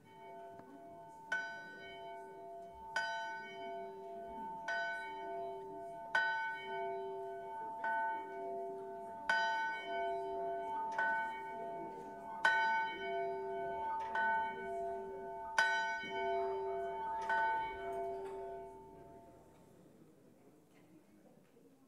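A single bronze church bell hung in an open frame, rung by pulling the rope on its clapper: about eleven strikes, one every second and a half or so, each ringing on into the next, dying away near the end.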